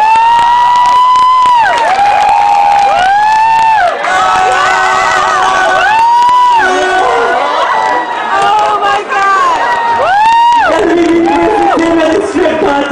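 Loud concert crowd cheering, with long, high-pitched screams one after another, several overlapping.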